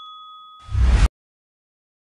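A sound-effect bell chime rings out and fades, its few clear tones dying away over the first half second. About half a second in comes a short, loud, noisy burst that cuts off suddenly into dead silence.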